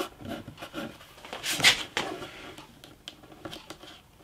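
Light rubbing, scratching and small clicks as hands press and shift a thin, taped wooden veneer piece against the edge of a wooden bass guitar body, with a brief louder rustle about a second and a half in.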